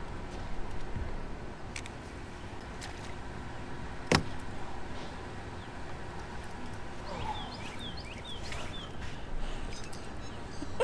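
Steady low wind and water noise on an open boat, with one sharp knock about four seconds in and a few short high chirps between about seven and nine seconds.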